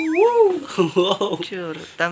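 People talking. At the start there is a short wavering, pitched whine.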